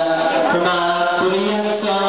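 Live band performance with singing in long held notes over the instruments.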